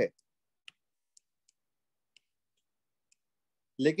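A handful of faint, sharp clicks at irregular spacing: a stylus tapping on a tablet's glass screen while selecting and switching tools.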